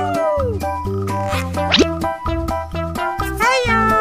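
Upbeat children's background music with a steady beat, with sliding-pitch sound effects over it: a falling glide at the start, a fast rising sweep near the middle, and a wavering glide near the end.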